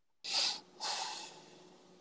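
Two short breathy bursts close to a microphone, about half a second apart, then a faint steady hum of an open microphone.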